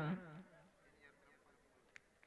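The tail of a man's drawn-out last word over a loudspeaker, fading out within about half a second. Then faint, distant crowd voices, with one short click near the end.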